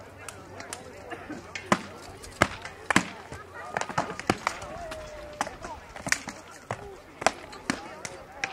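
Rattan weapon blows striking a shield and plate armour in armoured combat: a dozen or so sharp strikes in irregular flurries, with murmuring spectator voices behind them.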